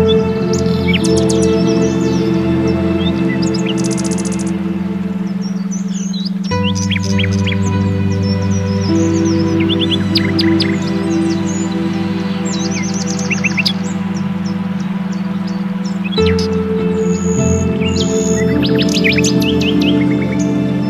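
Slow ambient meditation music of sustained chords that change about every ten seconds, over a steady low tone typical of a beta-wave binaural beat track, with recorded birds chirping and trilling throughout.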